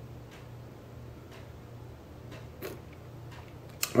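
A clock ticking faintly about once a second over a low, steady hum.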